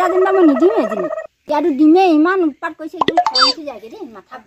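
A woman's loud voice with strongly wavering, swooping pitch. It breaks off abruptly a little over a second in, then resumes, with a short sharp rising sweep of sound just after the three-second mark.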